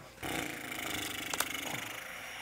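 Rasping, rustling handling noise at a game table: a hand moving pieces or cards across the board for nearly two seconds, with one sharp click about halfway through.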